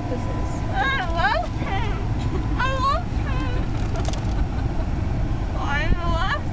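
Steady low rumble of a car heard from inside the cabin, with several short, high-pitched bursts of giggling and squealing over it.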